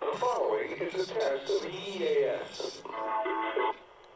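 AM radio broadcast from KDKA 1020 playing through a Uniden BC370CRS scanner radio's small speaker: a voice with music, ending in a few held notes that break off near the end.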